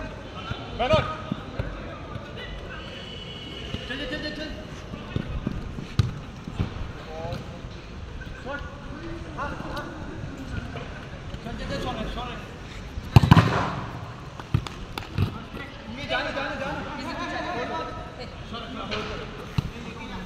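Players shouting to each other during a football game, with the thuds of the ball being kicked; the loudest thud comes a little past halfway.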